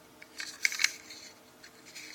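Handling noise of a small die-cast toy car turned in the fingers: a quick cluster of light clicks and rustles about half a second in, then a few fainter ones near the end, over a faint steady hum.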